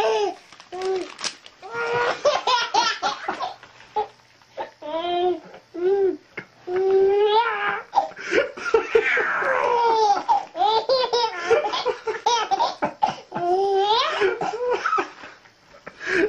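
A baby's belly laughter, fit after fit of breathless peals with only short pauses between them, set off by paper being torn for him.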